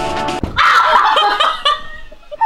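Background music that cuts off sharply about half a second in, followed by loud laughter from young women.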